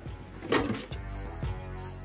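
Background music: a short sharp hit about half a second in, then a steady held chord.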